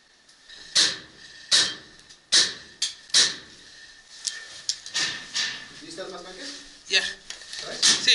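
Paintball markers firing: a string of sharp pops, about one a second at first and then more scattered, each with a short echo off bare concrete walls. Faint shouting comes in near the end.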